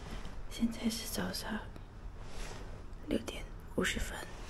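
A woman whispering.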